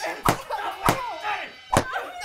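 A belt lashing down three times, with sharp cracks spaced a little over half a second apart. A wavering, whimpering cry comes between the lashes.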